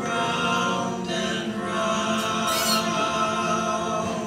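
Barbershop-style four-part a cappella tag played back from a laptop recording, its voices moving through a chord change or two and then holding one long chord.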